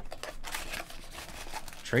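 Cardboard trading-card box being handled and its flap opened: soft, irregular papery scrapes and rustles, with one word spoken near the end.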